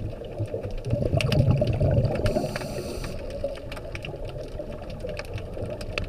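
Underwater sound picked up through a dive camera's housing: a scuba diver's breathing, with a rumble of exhaled bubbles swelling about a second in and a short regulator hiss about two seconds in, over continual scattered crackling clicks.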